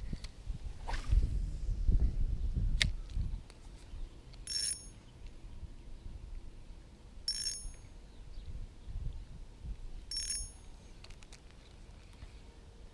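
Three short, high bell-like rings, evenly spaced about three seconds apart, starting about four seconds in. They follow a low rumble on the microphone and a single click in the first few seconds.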